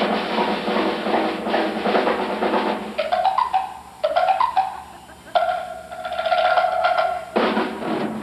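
A high school concert band plays with a drum kit. About three seconds in, the full band drops away, and a single wind instrument plays two short rising scoops and then holds one long note over a few drum hits. The whole band comes back in near the end.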